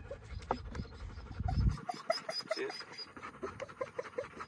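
A young dog panting quickly after a retrieve, with a low rumble during the first couple of seconds.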